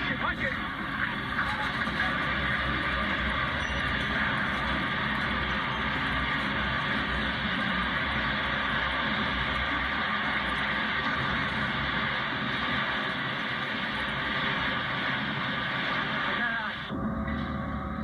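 Camcorder recording of the Big Blue heavy-lift crane and the roof section it carried collapsing onto the stadium structure: a continuous loud cacophony of noise from everything coming down. It stays steady, with no single bang standing out, and changes shortly before the end.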